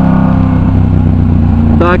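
Yamaha MT-07's parallel-twin engine, breathing through an aftermarket Arashi exhaust, running at a steady note in city traffic, its higher tones softening about half a second in.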